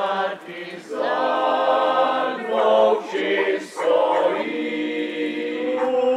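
Choir singing in long, held phrases with brief breaks between them.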